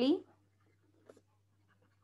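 The end of a woman's spoken phrase, then faint, irregular scratches and ticks of a stylus handwriting on a tablet screen, a little stronger about a second in.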